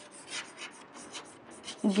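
Chalk writing on a chalkboard: a run of short scratching strokes as a word is written.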